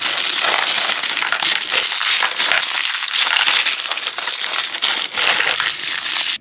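Thin tissue-paper wrapping being unfolded and crumpled by hand, a loud continuous crinkling throughout.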